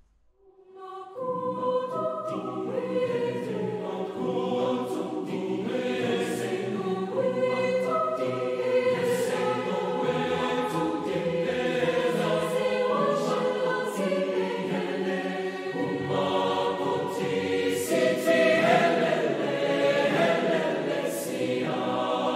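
A choir singing in several parts, with long held chords that change every second or two; it comes in about a second in, after a brief silence.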